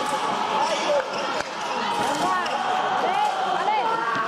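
Many short, squeaky chirps that rise and fall in pitch, from athletic shoes squeaking on the fencing floor, over a steady bed of background voices. There are a couple of sharp clicks about a second in.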